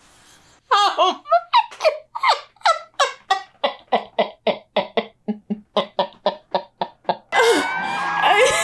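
A woman laughing hard in a long run of rapid 'ha' pulses, about three a second, lasting several seconds. Shortly before the end, a louder noisy sound with a couple of steady tones cuts in.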